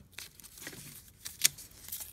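Pieces of frisket masking film and clear tape handled between the fingers: light crinkling and small ticks, with one sharper click about one and a half seconds in.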